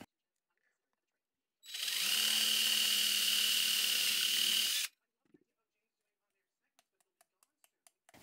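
DeWalt 20V cordless drill running steadily for about three seconds as its bit bores a hole through a thin clear plastic ornament resting on a wood block, then stopping. A few faint clicks follow near the end.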